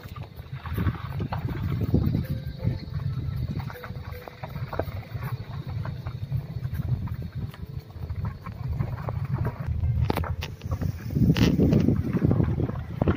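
Low, uneven rumble of a vehicle driving along a forest road, with wind buffeting the microphone and a few sharp knocks near the end.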